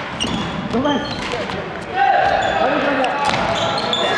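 Badminton rally on a wooden indoor court: sharp cracks of rackets striking the shuttlecock several times, with sneakers squeaking on the floor.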